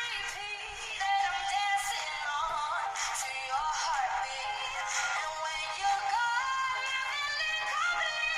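A female pop singer singing live over a band's backing, with sliding and held notes in a continuous melody.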